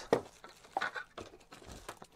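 Cardboard packaging and plastic-bagged, bubble-wrapped items being handled: a few light rustles and taps.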